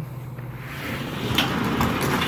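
Sectional overhead garage door being raised by hand, its rollers running up the steel high-lift tracks with a steady rolling rattle that grows louder, and a sharp click about one and a half seconds in. The door opens pretty easily.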